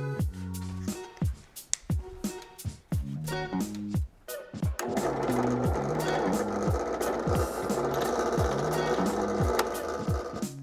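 Background music plays throughout. About five seconds in, a benchtop drill press starts running as its small bit drills a hole through a stainless steel medallion, a steady noisy whir under the music.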